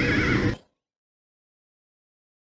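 Noisy hall sound with a high, wavering cry. It is cut off abruptly about half a second in, and dead silence follows.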